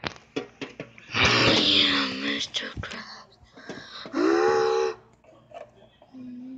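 A person's voice gives two drawn-out, wordless wailing cries, the first starting about a second in and the second, shorter one about four seconds in, in play-acting for toy characters. A few light clicks come in the first second.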